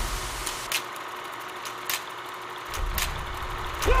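Film projector running: a steady mechanical whir with scattered sharp clicks, while scratched blank film runs through it. The deep low rumble drops away for about two seconds early on, then returns and builds near the end.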